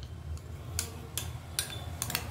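A metal spoon clicking against a small glass bowl as sauce is scraped out of it: several light clicks, spaced roughly half a second apart.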